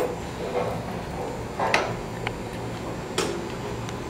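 Parker-Majestic internal grinder's table drive started with its reciprocating eccentric set off centre: a steady low hum, with two sharp knocks about a second and a half apart and a lighter tick between them.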